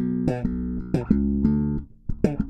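Bogart Sport V Headless Zebra five-string electric bass played fingerstyle: a short phrase of plucked, sustained notes, the last one muted so the sound drops away just before the end.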